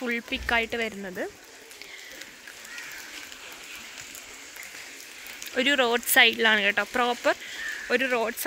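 A woman speaking, in two short stretches with a quiet pause of faint outdoor background between them.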